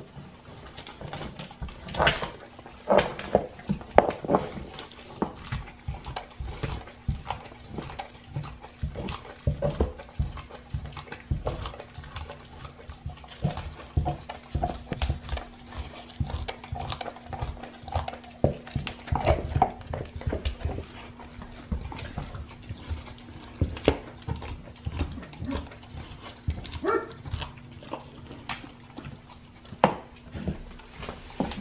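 Great Dane chewing a raw deer shank: an irregular run of wet crunches, cracks and tearing sounds as its teeth work the meat and bone.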